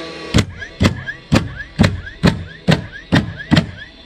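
DeWalt 20V XR cordless stapler firing staples through rubber pond liner into a 2x4, about eight shots in a steady rhythm of roughly two a second, each followed by a short whir of the tool's motor.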